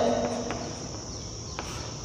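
Chalk writing on a blackboard: faint taps and scratches, about half a second and a second and a half in, over a steady high-pitched background hiss.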